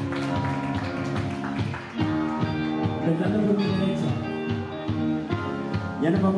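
Live band playing an instrumental passage on electric guitars, bass, drums and keyboard: held chords over a steady drum beat.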